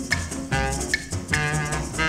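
A 1952 rhythm-and-blues band recording, played from a 78 rpm record: a horn section plays short repeated riffs over a steady drum beat.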